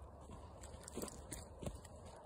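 Faint footsteps crunching on loose dirt and scattered gravel, a few soft steps in the second half.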